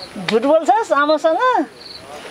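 A person speaking for about a second and a half over a faint, steady, high-pitched drone of insects in the background.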